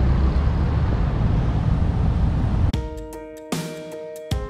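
Wind rumbling on the microphone for the first two and a half seconds or so, then background music with plucked guitar notes.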